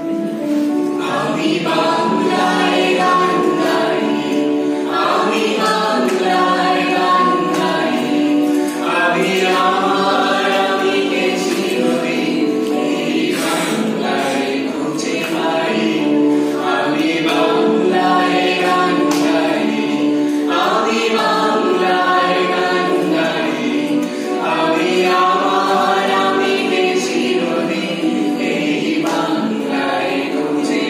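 A small mixed group of men and women singing a song together, accompanied by two acoustic guitars.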